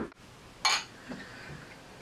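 A single short glass clink about half a second in as wine glasses and the wine bottle are handled on the table, followed by faint quiet handling sounds.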